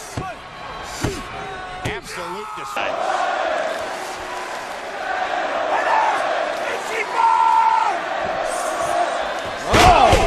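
Professional wrestlers slamming into the ring canvas over steady arena crowd noise: three thuds in the first two seconds, the crowd swelling in the middle, and a loud slam near the end as a sit-out chokebomb lands.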